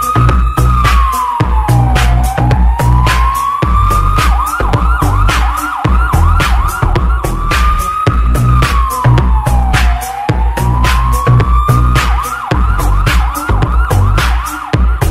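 Bass-boosted electronic dance track built around a siren sound: a tone that glides down and back up, then breaks into a fast yelping wail of about three short sweeps a second, the whole figure repeating about every eight seconds. Under it run a steady kick drum and heavy bass.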